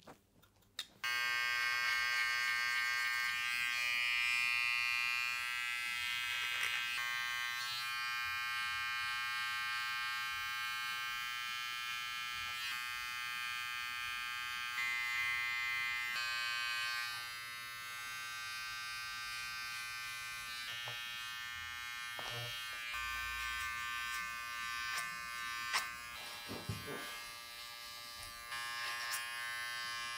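Electric hair clippers switched on about a second in, buzzing steadily while cutting over a comb, with a few short clicks.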